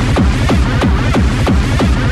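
Hardtek tekno track: a fast, dense electronic beat of closely spaced percussive hits over a steady bass line, loud and unbroken.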